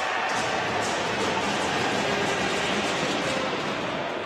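Steady ice hockey arena ambience, an even wash of noise with no distinct events, heard under a replay of a penalty shot.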